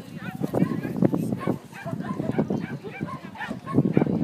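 A dog barking repeatedly, with people's voices alongside.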